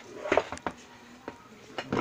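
A few light clinks and taps, spaced irregularly, from hands handling the motorcycle seat and its metal fittings.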